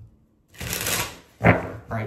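A tarot card deck being shuffled by hand, with a short burst of rustling and riffling starting about half a second in.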